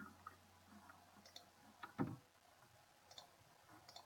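Near silence with a few faint clicks from a computer mouse and keyboard, one a little louder about halfway through.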